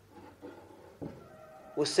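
A short pause in a man's Hindi lecture, with faint indistinct sounds and a light click about a second in; his voice resumes near the end.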